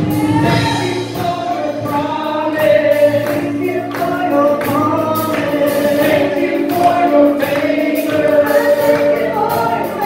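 Live worship band: a female and a male voice singing a worship song together over keyboard, electric guitar and drums, with a steady beat.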